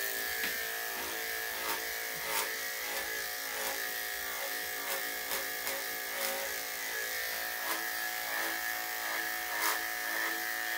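Corded electric dog grooming clippers fitted with a number five blade, running steadily as they shave through a thick, damp undercoat. A constant hum with a high whine, with light ticks recurring about every two-thirds of a second.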